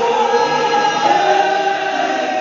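Gospel choir singing in several-part harmony, holding long notes.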